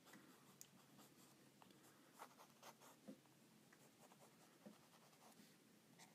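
Faint, scattered scratching of a mechanical pencil's 0.5 mm HB lead on a post-it note, a few short sketching strokes spread across the stretch.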